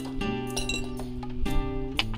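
Background music of held chords, with coins clinking as they are dropped into a glass jar, a few separate small clinks.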